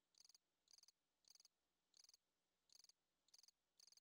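Near silence with faint cricket chirping: a short high trill repeated steadily about every two-thirds of a second.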